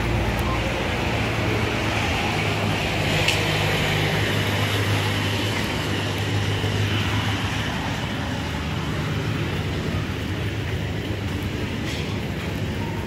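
Street traffic ambience: a steady wash of road noise with a low engine hum underneath that fades away about two-thirds of the way through.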